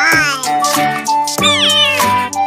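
Background music for a children's video, with steady held notes and two squeaky cries that fall in pitch, one at the start and one about one and a half seconds in.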